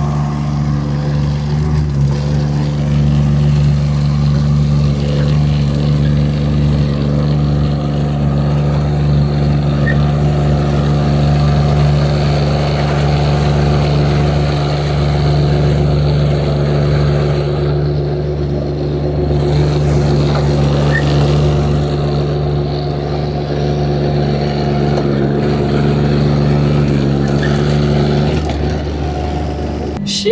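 Remote-controlled padfoot (sheep's foot) trench roller's diesel engine running steadily as it drives along the dirt trail, a constant loud drone that changes shortly before the end.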